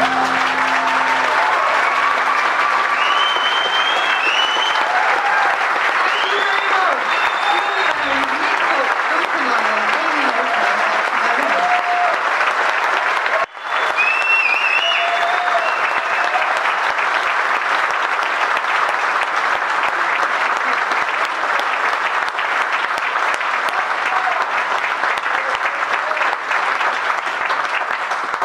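A large indoor audience applauding, with whoops and cheers rising out of the clapping now and then. The applause breaks off for an instant about halfway, then carries on.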